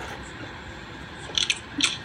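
Faint steady room hiss with a few short crisp clicks, a pair about a second and a half in and another near the end.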